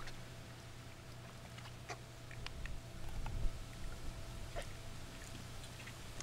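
Faint handling sounds as a dive mask and snorkel are pulled on and adjusted: a few small clicks and a brief low rumble about three seconds in, over a steady low hum.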